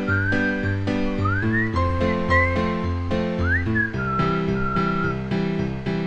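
Background music: a whistled tune that glides between notes over a steady plucked accompaniment.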